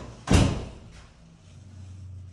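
A door shutting with one loud bang about a third of a second in, dying away quickly.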